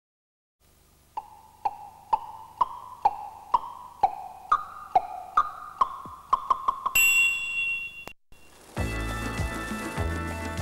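Programme title jingle: a run of single chiming, bell-like notes about two a second, slowly climbing in pitch and quickening at the end, then a bright high held chime that cuts off suddenly. After a short gap, full band theme music starts near the end.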